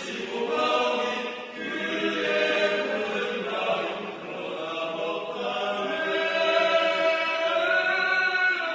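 Mixed choir of men's and women's voices singing in harmony, holding notes that move from chord to chord and swelling louder in the second half.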